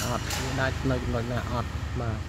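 A man talking continuously over a low, steady background rumble.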